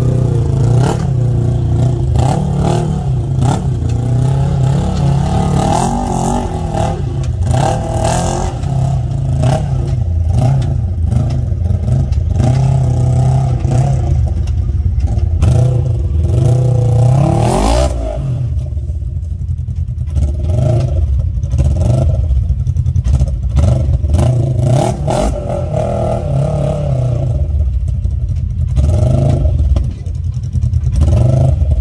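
Side-by-side UTV engine revving up and down as it crawls over rocks, with a quick climb in revs a little past halfway.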